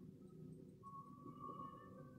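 Near silence: faint background hum, with a faint thin high tone held for about a second in the middle.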